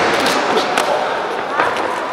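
Voices echoing in a large sports hall, with a few dull thuds from two boxers' gloves and feet as they clinch on the ring canvas.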